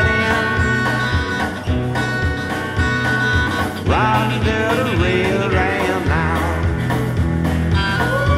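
Live blues band playing an instrumental passage: lead guitar with notes bent up in pitch over electric bass and a drum kit keeping a steady beat.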